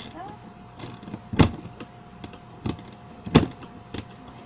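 Metal wrench tightening bolts in a plastic wagon bed: a handful of sharp clacks and clicks at uneven intervals as the tool knocks on the bolt heads and plastic, the loudest about a second and a half in and again near the end.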